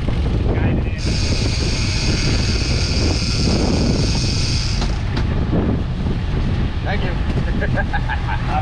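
Boat engine and wind on the microphone rumbling steadily. From about a second in, a high-pitched whine holds for about four seconds, typical of a trolling reel's drag giving line to a fish.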